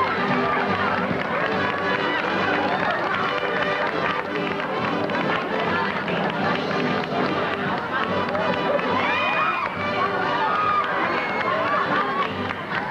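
Live band music playing under an audience's laughter and excited voices calling out, with no break.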